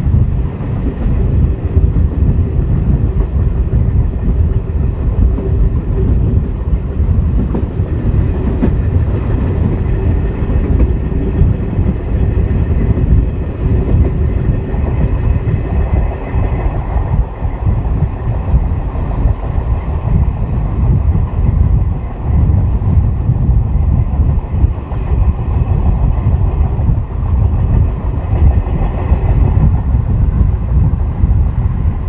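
MLW-built CP 1557 diesel locomotive, its turbocharged Alco 251 engine running steadily as it hauls the train, heard from a coach window together with a heavy rumble of the moving train and the clickety-clack of wheels over the rail joints.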